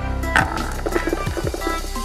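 A small ball strikes a rack of miniature bowling pins about a third of a second in, and the pins clatter for about a second as they fall. Background music plays throughout.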